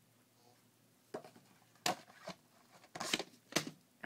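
Several light clicks and knocks of plastic VHS cassettes and cases being handled and set down, starting about a second in.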